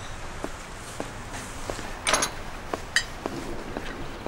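Footsteps on a hard floor, a knock about every half second, with a short ringing clink about three seconds in.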